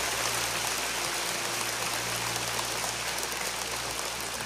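A large indoor crowd applauding steadily, easing off slightly near the end.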